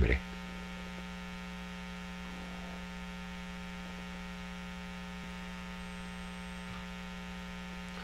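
Steady electrical mains hum with a buzzy row of overtones, unchanging in level and pitch.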